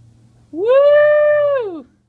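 A single loud, drawn-out cry starting about half a second in: it rises in pitch, holds steady for most of a second, then falls away.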